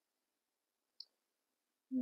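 Near silence in a pause between speech, broken once about a second in by a single short, faint click.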